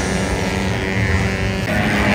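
Small-capacity race motorcycle engine running at high revs on track, from a 113cc ported race bike. The sound changes near the end as the shot cuts to other bikes on the straight.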